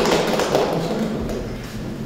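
Audience applause in a hall dying away, with a few scattered taps and thumps.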